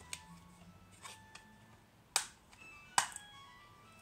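Plastic Blu-ray case being handled and snapped shut: a few small clicks, then two sharp louder clicks about two and three seconds in. Faint music plays underneath.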